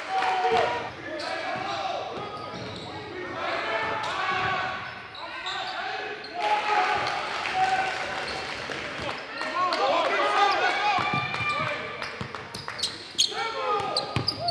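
Basketball bouncing on a gym's hardwood floor amid indistinct shouting from players and spectators, echoing in the large hall, with sharp clicks and knocks near the end.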